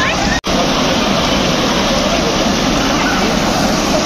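Waterfall and rocky mountain stream rushing steadily, with faint voices behind it. The sound cuts out for an instant about half a second in.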